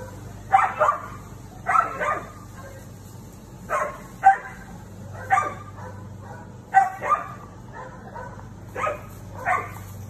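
Husky barking at a cat: about a dozen short, sharp barks, several in quick pairs.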